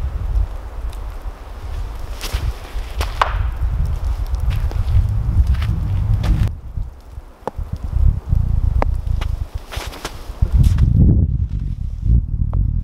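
Footsteps in wet snow over a low uneven rumble, with a few sharp clicks.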